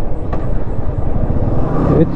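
Royal Enfield motorcycle's single-cylinder engine running steadily while riding, its firing pulses heard as an even low beat.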